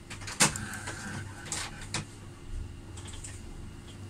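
Epson L120 inkjet printer running a nozzle check print: a sharp mechanical click about half a second in, then a motor whine lasting about a second and a couple more clicks as the paper feeds and the print head moves.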